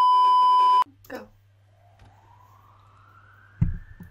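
A loud, steady electronic beep held for about a second, then after a brief spoken word a faint tone slowly rising and falling in pitch, with a short low thump near the end.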